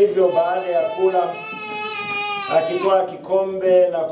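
A young child crying in long wails, one cry held steady for about a second and a half before breaking into shorter sobs.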